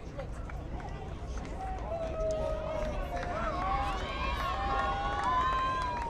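A group of voices shouting and yelling together, growing louder and more sustained from about two seconds in, over a steady low rumble.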